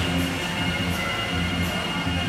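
HO-scale model train running along the layout track, a steady rumble from its wheels and motor.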